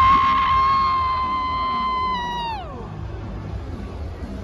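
A long high-pitched note rises in, holds steady for about two seconds, then slides down in pitch and fades, over the low noise of a packed stadium.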